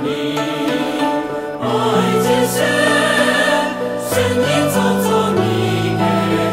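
Background music: a choir singing a Hakka-language gospel song over huqin accompaniment. The sung voices come in about a third of the way through, after a short instrumental passage.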